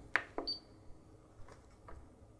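Clicks from pressing the front-panel controls of a Siglent SDS1202X-E oscilloscope: two sharp clicks with a short high beep from the scope about half a second in, then a few fainter clicks.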